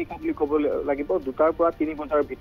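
Speech only: a news narrator reading a report in Assamese.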